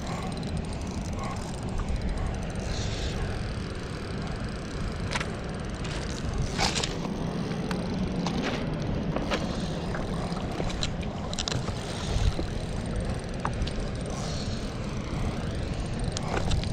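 Steady rushing of fast-flowing canal water, with a few sharp clicks scattered through it.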